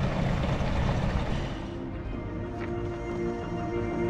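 Water running from an outdoor spigot into a container, a steady rushing noise for about the first second and a half. Then background music with sustained tones comes in.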